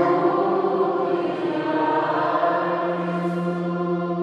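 Choir singing the drawn-out, held chord of the sung acclamation that answers the close of the Gospel reading, with a lower note joining about halfway through.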